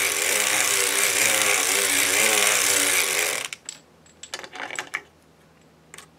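Tru-Knit circular sock machine being hand-cranked, knitting rounds of waste yarn after the toe. It runs steadily, stops abruptly about three and a half seconds in, and a few light clicks of handling follow.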